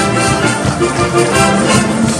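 School wind band playing a Eurobeat-style arrangement: brass instruments carrying the tune over a steady, fast drum beat.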